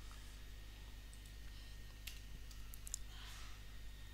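A few faint computer keyboard and mouse clicks as a line of code is copied and pasted, most of them between about two and three seconds in, over a steady low electrical hum.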